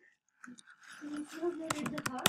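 Computer keyboard keys clicking as a short word is typed, with a voice in the background.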